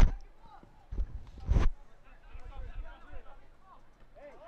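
Three dull thumps of a soccer ball being struck on a grass pitch: a goal kick right at the start, then two more ball impacts about a second and a second and a half in. Faint, distant shouting from players runs underneath.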